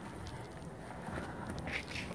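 Faint footsteps on an exposed-aggregate concrete sidewalk, a toddler and an adult walking, over a low outdoor background hiss.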